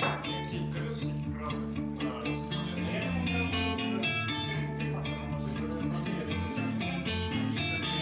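Electric guitar played as a jam: a steady stream of picked notes over sustained low bass notes.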